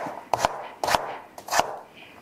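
Kitchen knife chopping raw pumpkin on a wooden chopping board: about five sharp knocks of the blade through the flesh onto the board, roughly two a second.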